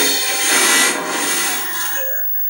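A CRT television's loudspeaker, driven by its TDA2003 amplifier chip, plays broadcast sound with a strong hiss, getting gradually quieter through the second half as the volume is turned down. The loud output shows the sound stage working normally again after a dried-out electrolytic capacitor was replaced.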